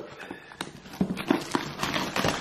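Plastic shrink wrap crinkling and tearing as it is pulled off a box by hand, in irregular crackles with a few sharper snaps.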